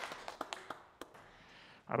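A few scattered hand claps, irregular and thinning out within about the first second, then quiet room tone.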